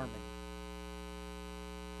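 Steady electrical mains hum, a ladder of evenly spaced tones at a constant level, with the tail of a spoken word fading out at the very start.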